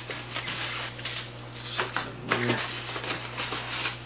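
Clear plastic bags holding drone propeller blades crinkling and rustling as they are handled and pulled from the packaging, with a few light ticks.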